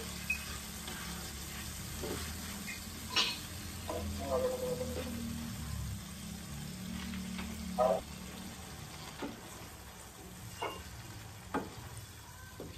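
Garlic and chili flakes sizzling in oil in a nonstick wok, stirred with a spatula that scrapes and knocks against the pan a few times.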